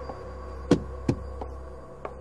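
Two dull knocks in quick succession, a little under half a second apart, over a low steady hum.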